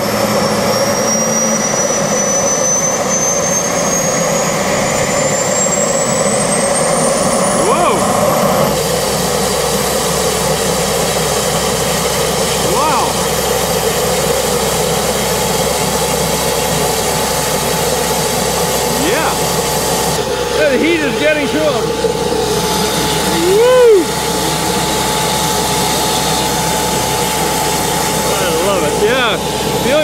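Gas turbine engine of the Ghia Gilda show car spooling up: a thin whine climbs steadily in pitch for about nine seconds, then holds at a high, steady pitch as the turbine runs, with a low rumble underneath.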